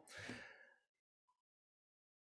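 A man's short breathy exhale, about half a second long, then near silence.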